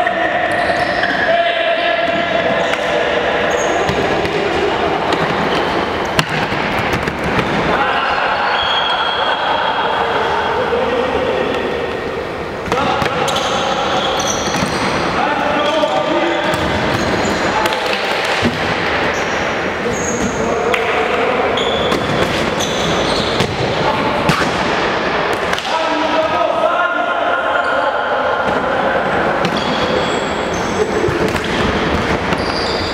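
Futsal being played in an echoing gym hall: the ball thudding off feet and the wooden floor, players shouting to each other, and short high shoe squeaks on the floor.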